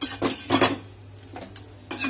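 Metal spatula scraping and knocking around a steel kadai as a thick, wet mix of onion, tomato and fish is stirred: a quick run of strokes at first, then one more stroke near the end.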